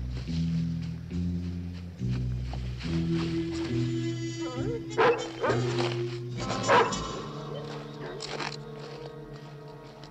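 Background score of low, stepping notes, with a large dog barking twice, about five and seven seconds in; the barks are the loudest sounds.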